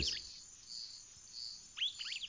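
Natural ambience of insects and birds: a steady high insect trill with a few soft chirps, and a bird calling near the end in a quick run of falling notes.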